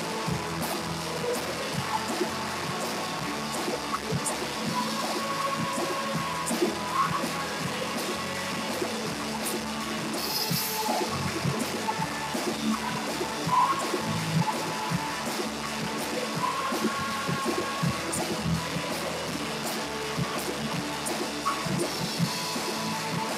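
Live worship band music with a drum kit and singers at microphones, sounding thin and compressed as if through a stream's audio. A cymbal crash comes about halfway through.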